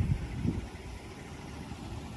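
Low, steady outdoor rumble in a parking lot, with no distinct events.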